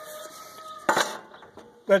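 One sharp metallic clank, about a second in, as a short section of thin sheet-steel stove pipe is set down on the bench.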